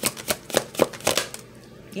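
A tarot deck being shuffled by hand: a quick run of crisp card slaps and flutters, about four or five a second, that stops about two-thirds of the way through.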